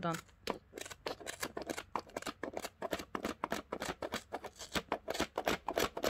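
Scissors snipping again and again through a thick bundle of yarn strands wound around a plastic box, several short crisp cuts a second.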